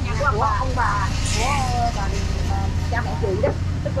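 Steady low engine rumble of street traffic, with a truck and a motorbike passing close by, under people talking.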